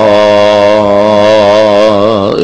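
A man's voice holding one long, gently wavering note on the drawn-out last syllable of "Bismillah" in melodic Quranic recitation.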